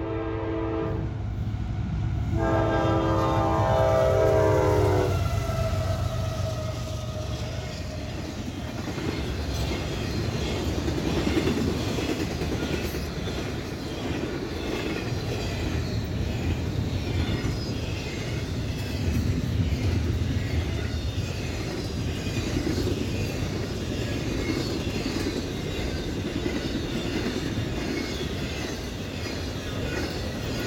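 CSX intermodal freight train approaching and passing: the locomotive's air horn sounds a short blast and then a longer one, trailing off with a slight drop in pitch as it goes by. Then the double-stack and trailer flatcars roll past with a steady rumble and a rhythmic clickety-clack of wheels over the rail joints.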